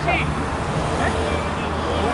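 Scattered voices and short calls from players over a steady low rumble of city traffic around an outdoor pitch.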